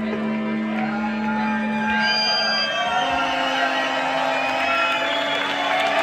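A txaranga of saxophones, trumpets and trombones, with a rock band, holding long sustained notes over a low steady drone. From about two seconds in, crowd whoops and cheers rise over the music.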